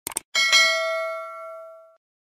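Notification-bell sound effect for a subscribe-button animation: a quick double click, then a bell ding that rings out and fades over about a second and a half.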